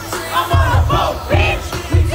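Live comedy hip-hop song played loud over a venue PA, with a repeating deep bass beat under shouted vocals and a crowd shouting along.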